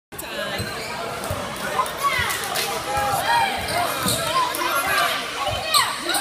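A basketball being dribbled on a court floor, with irregular thumps every half second to a second, while voices call out over it.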